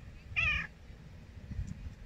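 Silver tabby domestic shorthair cat giving one short, high-pitched call, a brief wavering chirp-like vocalization near the start.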